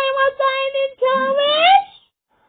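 A child singing a wordless tune close to the microphone: a long steady held note, a short break about a second in, then a note that slides upward and stops abruptly near the end.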